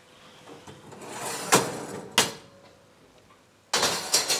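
Metal baking tray being taken out of an oven: two sharp metallic clicks in the middle, then a loud rattling scrape as the tray slides out along the oven rails near the end.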